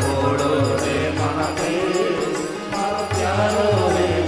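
Live Indian devotional bhajan music: a gliding melody over a steady beat of hand drums, with string and wind instruments.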